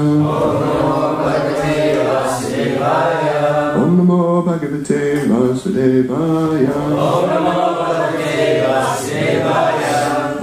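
Devotional chanting: a melodic male voice intoning a prayer in held, gliding notes.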